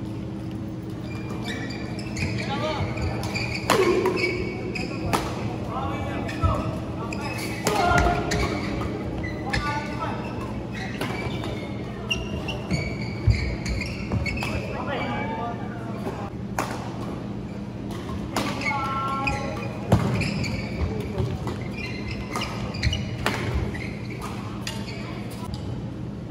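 Badminton doubles rallies: rackets hitting the shuttlecock in sharp, irregular cracks, with voices and a steady low hum in a large indoor hall.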